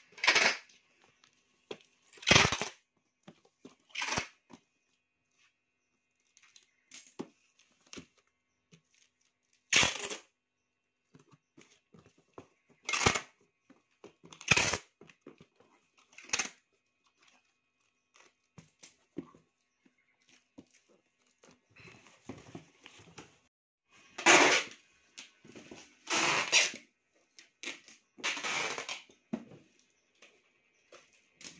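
Packing tape being pulled off the roll in short, loud rips, about ten of them spread out, while a cardboard box is sealed, with quieter handling of the box between the rips.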